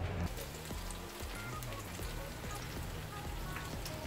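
Ripe plantain pieces frying in hot oil in a pan: a steady sizzle with many small crackling pops.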